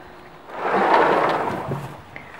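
A gust of wind: a brief rush of noise that swells and fades over about a second and a half.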